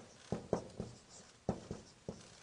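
Marker writing on a whiteboard: a quick series of about five sharp taps and short strokes.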